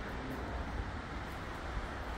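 Steady outdoor background noise, an even low hiss and rumble with no distinct events.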